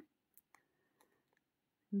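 Three faint, sharp clicks from a metal crochet hook working stiff polyester macramé cord while double crochet stitches are made.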